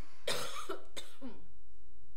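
A person coughing once, sharply, about a quarter second in, trailing off in a short throat sound, with a light click about a second in.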